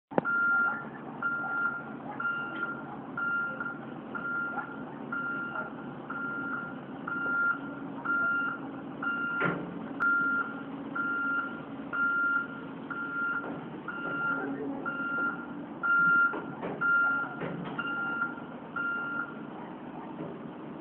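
A vehicle warning alarm beeping about once a second over a heavy diesel engine running, with a sharp clank about halfway through and a few knocks later on. The beeping stops just before the end.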